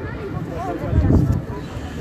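Faint background voices over a low rumbling noise that grows louder about a second in.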